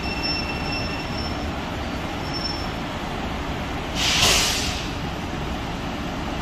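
Long Island Rail Road M9 electric train standing at the platform, its equipment giving a steady rumble with a thin high whine in the first second or so. About four seconds in comes one short, loud hiss of released air.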